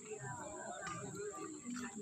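Faint, distant voices of people talking, with a steady high-pitched whine running underneath.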